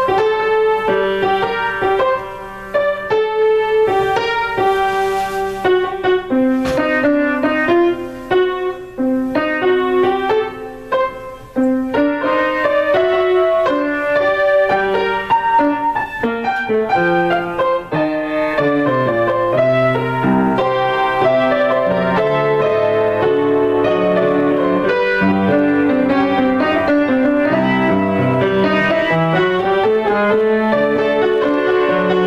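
Solo piano improvisation. The first half is short phrases of single notes and chords with brief pauses between them; from a little past halfway it turns into fuller, continuous chords over low bass notes.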